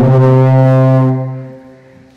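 A man's voice chanting a Hindu devotional hymn, holding one long, low note that fades away about a second and a half in.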